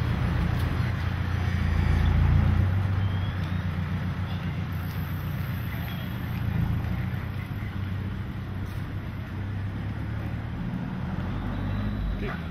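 Street sound dominated by a motor vehicle engine running with a steady low hum, swelling about two seconds in and then easing.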